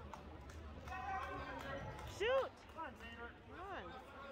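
Spectators' voices: indistinct chatter, then a loud high-pitched shout a little after two seconds in, followed by two shorter calls near the end.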